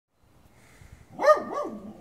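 A dog barking twice in quick succession, the first bark the louder.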